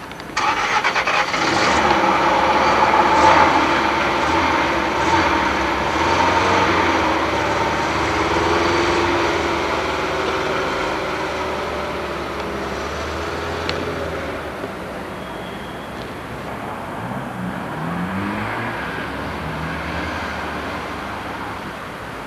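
A motor vehicle's engine running close by, cutting in suddenly just after the start and slowly fading away over about fifteen seconds.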